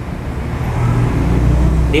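Low rumble of road traffic, swelling in the second half.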